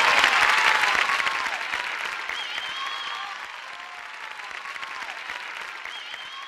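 Audience applauding at the end of a song, with a few cheers and whistles over the clapping. The applause dies down steadily.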